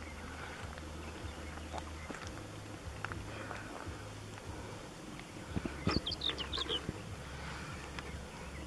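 Quiet outdoor ambience with a low, steady rumble. About six seconds in comes a short run of high, quick bird chirps.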